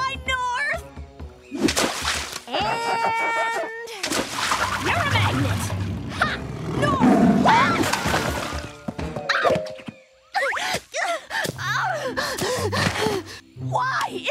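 Cartoon soundtrack: music under a girl's vocal cries, including a long held scream a few seconds in, and a splash of water in the middle as a tiger lands in a pond.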